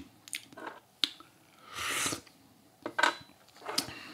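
Small porcelain tea cups clinking lightly against each other and the bamboo tea tray as they are moved, several separate clicks, with a short breathy noise around the middle.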